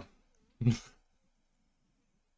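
A man's single short laugh, a brief burst about half a second in.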